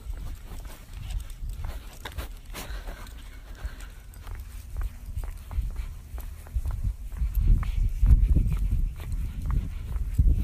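Footsteps on pavement with wind rumbling on a phone microphone, the rumble loudest about seven to nine seconds in, and a scatter of light ticks.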